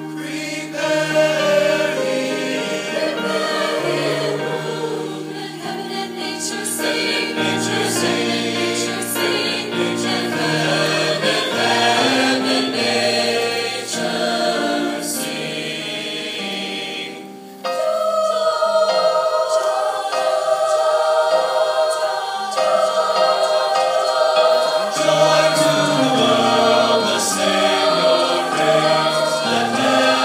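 A large choir singing. The sound dips briefly a little past halfway, then the singing comes back louder.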